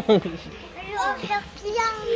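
Speech only: an adult's voice at the very start, then a toddler saying a few short words in a high voice.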